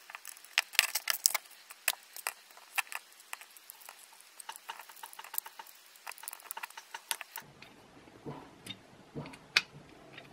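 Irregular small metallic clicks and ticks as a precision screwdriver drives tiny screws through a small metal hinge into a wooden lid.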